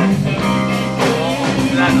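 Blues music with electric guitar playing steadily, with held notes.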